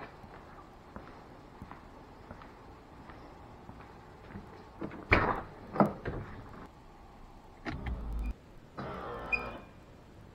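Car door latch clicking sharply twice as the door of a Mitsubishi Starion opens, followed near the end by a short electric motor whir as its pop-up headlights raise.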